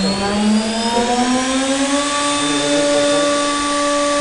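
Wood CNC router spindle motor spinning up: a whine that rises in pitch and levels off to a steady pitch about two seconds in.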